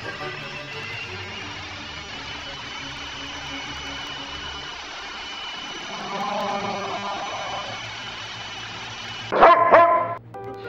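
Background music playing, then a Bouvier des Flandres barking loudly in a short burst near the end.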